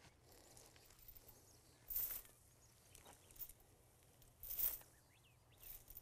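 Three short rustling swishes, about two seconds apart, as a homemade chain-weighted crimper board is stepped down onto tall cover crop, crushing and flattening the stalks.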